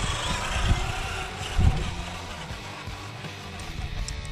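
RC scale crawler truck driving past on gravel, its motor whining, with a couple of low thumps as it goes, over background music.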